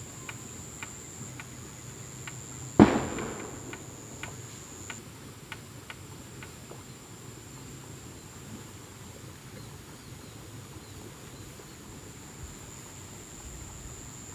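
Steady high-pitched insect whine from the surrounding vegetation, with a single loud thump about three seconds in and a few faint ticks during the first half.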